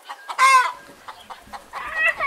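Chickens calling outdoors: one loud, short call about half a second in, then softer calls near the end.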